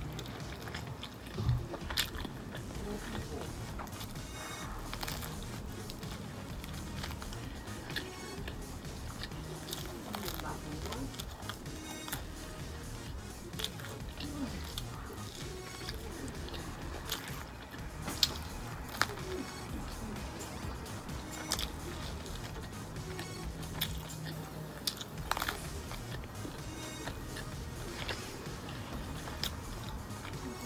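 Close-up biting and chewing of a slice of pizza, with scattered crunches of the crust, over faint background music.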